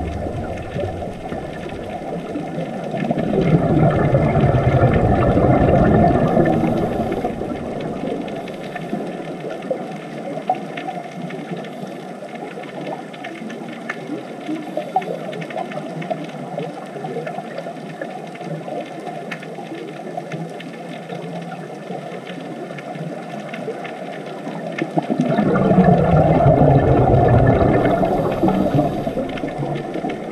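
Underwater sound picked up through a camera housing: a steady hiss with scattered crackling clicks. Twice it gives way to several seconds of loud bubbling rumble, the sound of a scuba diver breathing out through a regulator.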